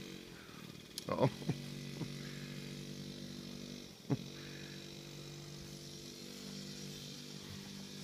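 Suzuki JR50 children's motorbike, its small two-stroke single running steadily at low revs. The engine note sags briefly near the start and again about four seconds in, then picks back up.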